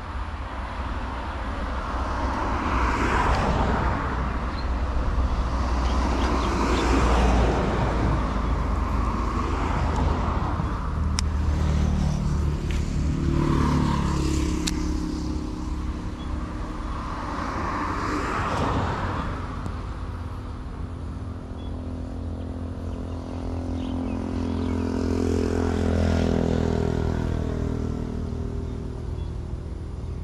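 Road traffic passing close by: a series of vehicles going past one after another, each swelling and fading over a few seconds, some with an engine note that falls in pitch as it goes by.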